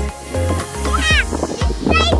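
Background music with a steady bass beat, with a short high-pitched falling vocal sound about a second in.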